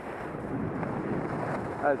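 Skis sliding and scraping over packed snow, a steady noisy rush that slowly grows louder, mixed with wind on the microphone.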